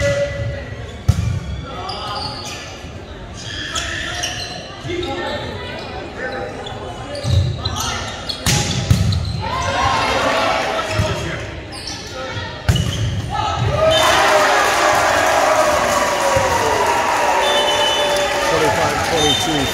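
Echoing gym with players shouting and the sharp smack of a volleyball being hit, most plainly about a second in and again near 13 s. About 14 s in, a louder burst of cheering and shouting breaks out as the final point is won.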